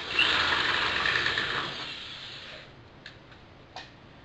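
Power drill boring into the Karmann Ghia's steel body panel to enlarge the hole for the convertible top's rear tensioning cable. The motor spins up with a short rising whine, runs for about two and a half seconds and winds down, and a couple of light clicks follow.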